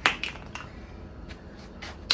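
A sharp click, then a few faint clicks about a second and a half later: handling noise from a hard plastic-and-rubber truss stacker as it is carried.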